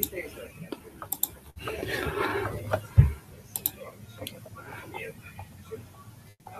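Indistinct, faint talk over a video call, with scattered sharp clicks and one low thump about three seconds in.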